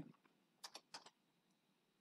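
Faint computer keyboard keystrokes: a few quick key clicks about half a second to a second in.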